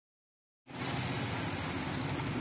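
Rain and road noise heard from inside a moving vehicle: a steady high hiss over a low engine drone. It starts abruptly about two-thirds of a second in.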